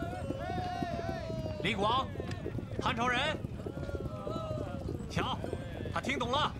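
A man shouting 'Flying General!' several times in loud, drawn-out calls, trying to rouse a badly wounded man who is near death. Low, irregular knocking sits under the calls.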